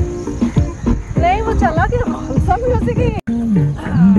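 Dance music track with vocal sounds and sweeping pitch glides, briefly cutting out a little after three seconds in.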